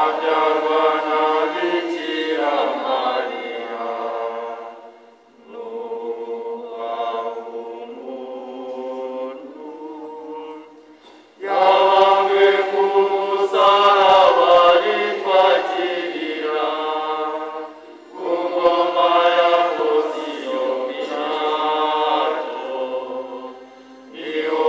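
Church choir singing a hymn in phrases with short breaks between them. The singing becomes noticeably louder about halfway through.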